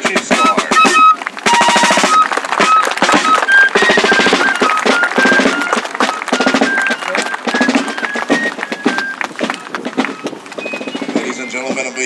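Fifes playing a marching tune over rope-tension field drums, a fife and drum corps on the march. The music grows fainter near the end.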